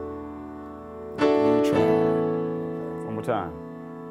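Gospel chords played on a keyboard with a piano sound: a held chord rings out, then a new chord is struck about a second in and left to decay. A short, quick flourish follows about three seconds in.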